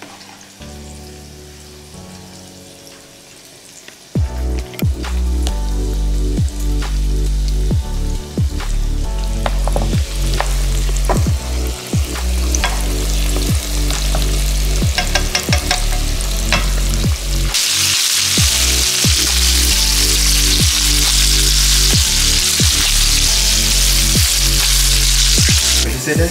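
Breaded chicken pieces frying in a pan of hot oil, a loud steady sizzle that begins about two-thirds of the way through. Under it runs background music with a heavy bass beat, which comes in about four seconds in.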